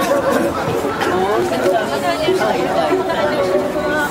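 Chatter of many people talking at once, overlapping voices with no single speaker standing out.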